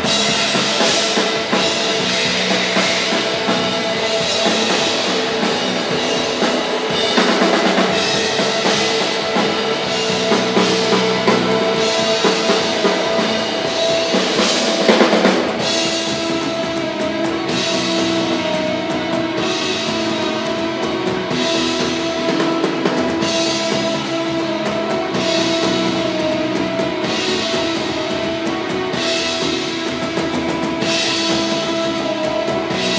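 Live rock band playing an instrumental passage: drum kit, electric bass and two electric guitars holding sustained chords, with no singing. About halfway a loud peak leads into a new chord, after which the drums keep a steady beat with a cymbal-bright swell about every two seconds.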